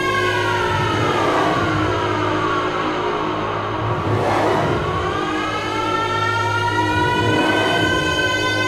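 UK bounce / scouse house dance music: a synth line slides down in pitch over about four seconds, then climbs back up over the next few seconds, above a steady bass tone.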